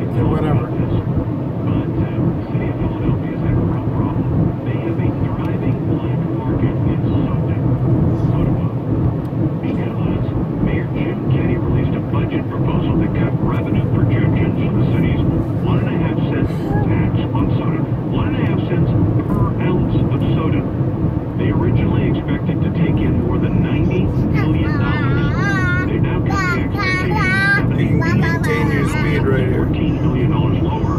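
Steady road and engine rumble inside a moving car's cabin. A high, wavering whine joins it for a few seconds near the end.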